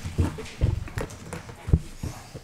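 A few dull thumps and knocks close to a desk microphone, the loudest near the end.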